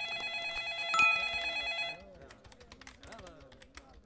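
Telephone ringing with a fast electronic trill, louder about a second in, stopping at about two seconds; then quick clicks of typing on a computer keyboard.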